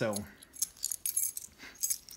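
Light, scattered metallic clicks and clinks from a small brass lock cylinder (a Schlage Everest Primus) being turned and handled in the fingers.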